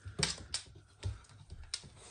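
A few irregular sharp clicks and taps from an American bully puppy's claws on a laminate floor as it moves about.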